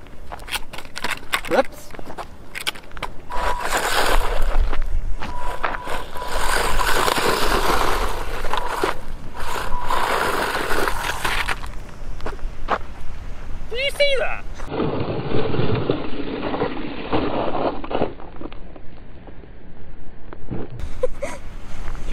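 A WLToys 124019 RC buggy driving on loose gravel: the electric motor whines steadily while stones crackle and click under the tyres, with wind rumbling on the microphone. The car runs in circles and flips over, and a man laughs about two-thirds of the way in.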